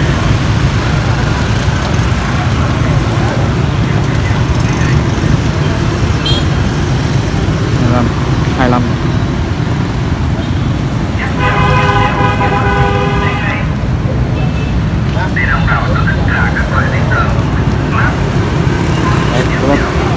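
Street traffic keeps up a steady low rumble of engines. About halfway through, a vehicle horn sounds once as a held tone of roughly two seconds.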